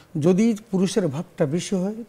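Only speech: a man talking steadily in short phrases, with brief pauses between them.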